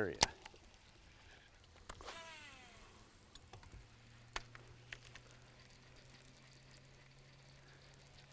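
Quiet casting on a bass boat: a sharp click just after the start and a few faint ticks from the fishing tackle, and a short falling whistle about two seconds in. From about halfway a low steady hum sets in, the bow-mounted electric trolling motor running.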